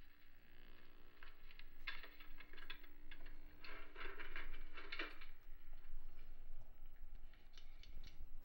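Television programme sound from a 1959 Philco Safari portable TV's small speaker, with no dialogue: scattered clicks and taps over a steady low tone that stops about five seconds in.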